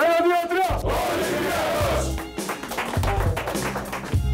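A team huddle break: one voice leads off and many voices shout together for about two seconds. Background music with a pulsing bass runs underneath.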